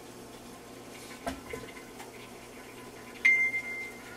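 A single electronic beep, one steady high tone lasting under a second, starts sharply about three seconds in. A faint low hum runs underneath.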